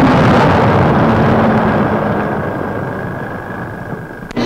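A heavy artillery shell exploding: a dense, noisy rumble that slowly dies away as the blast dust settles.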